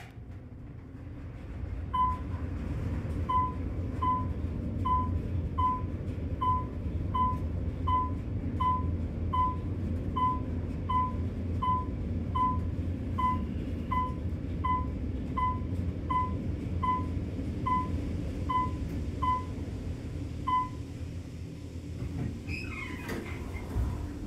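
Otis traction elevator cab rising with a steady low rumble. A short electronic chime sounds as each floor is passed, about two dozen in a row, a little under one a second, until they stop near the top. Near the end the car stops and the doors slide open.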